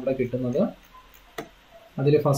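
A man's voice trailing off, then a single sharp click about halfway through, in an otherwise quiet pause.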